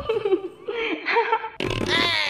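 Cartoonish comedy sound effects: a short wavering, buzzy sound, then a loud falling whistle-like glide that starts about one and a half seconds in.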